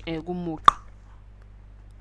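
A narrator speaks briefly, then there is a single sharp click. A steady low electrical hum runs underneath.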